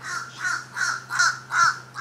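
A bird calling in a fast, regular series, about three calls a second, over a steady low hum.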